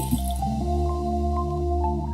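Background music with sustained chords and short plinking notes. Soda splashes from bottles into water beads and stops about half a second in.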